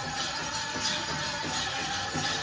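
Powwow drum and singers performing a men's chicken dance song in an even, steady drumbeat, with the jingling of the dancers' leg bells.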